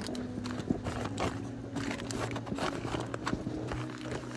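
Aluminium foil crinkling and a fabric insulated bag rustling as a foil-wrapped mess-tin tray is handled and tucked into the bag: a run of irregular crisp crinkles and soft knocks over a low steady hum.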